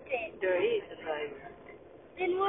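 Speech: a person talking, with only faint background noise underneath.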